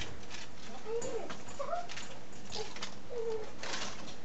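Cabbage frying in an oiled pan, with steady crackling and sizzling. Several short gliding bird calls come through the middle of it.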